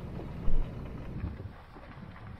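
Low rumble of a Ram pickup truck rolling slowly, with a gust of wind thumping on the microphone about half a second in. The rumble fades after about a second and a half.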